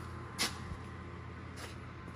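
Low steady background hum with two short rustles or scuffs, the clearer one about half a second in and a fainter one about a second later, as someone moves about handling things.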